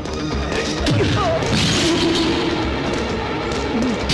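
Fight-scene soundtrack: dramatic background music with dubbed punch and crash sound effects, several sharp hits landing over the score.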